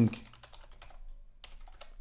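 Typing on a computer keyboard: a run of quick keystroke clicks, with a brief pause about a second in.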